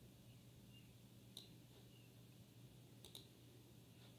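Near silence with a few faint computer mouse clicks: one a little over a second in and a quick pair about three seconds in.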